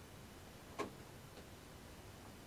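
A sharp click about a second in, followed by a fainter click about half a second later, over a faint steady hiss.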